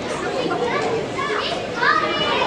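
Many young voices talking and calling out over each other, with a loud rising shout just before the end.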